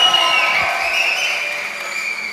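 Hall audience cheering and clapping, with a few high sustained calls over the noise, dying down gradually.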